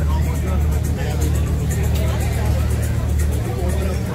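Chatter of many voices from people seated at café tables and walking past, over a steady low rumble.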